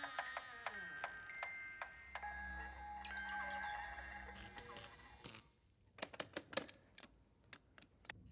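Quiet horror sound design: scattered sharp clicks over faint, held eerie music tones. About five seconds in it drops almost to silence, with only a few isolated clicks after.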